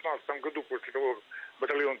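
A man speaking over a telephone line, his voice thin and cut off at top and bottom.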